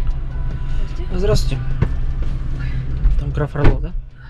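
Music playing in a car cabin while a passenger climbs into the back seat, with a few brief words and a car door shutting near the end.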